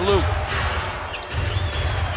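Basketball game sound on a hardwood court: a ball being dribbled under steady arena crowd noise, with short high sneaker squeaks about a second in and near the end.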